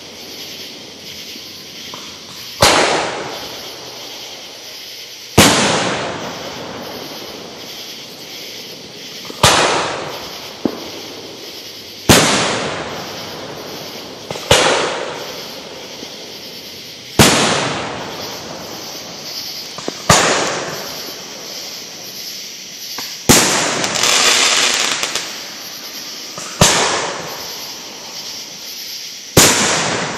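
Aerial firework shells bursting, about ten loud booms spaced two to three seconds apart, each trailing off over a second or two. One burst late on is followed by a longer crackle.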